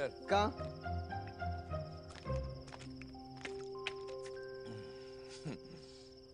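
A film's soft background score of slowly changing held notes, under a steady high chirring of night crickets. A few words of dialogue come right at the start.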